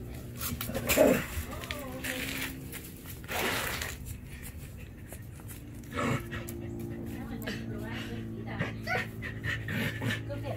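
A person laughs about a second in, with a dog panting.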